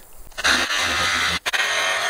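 Battery-powered cordless power washer spraying a jet of water at a tractor: a steady hiss of spray with the pump running. It starts about half a second in and cuts out for an instant about one and a half seconds in.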